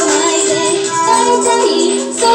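A female idol singer singing a J-pop song into a microphone over backing music.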